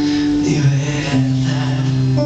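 Acoustic guitar strummed in a live song, with sustained chords ringing between sung lines.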